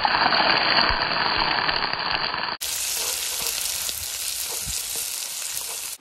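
Sliced onions and green chillies sizzling as they go into hot oil in a kadai. About two and a half seconds in, the sound cuts abruptly to a second, slightly quieter stretch of steady frying.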